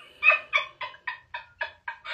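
A person laughing in a rapid run of about eight short cackles, each shorter and fainter than the last.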